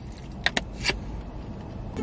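Steady low rumble of a car cabin with the engine and air conditioning running, with a few short clicks of someone chewing food about half a second in and again near the one-second mark.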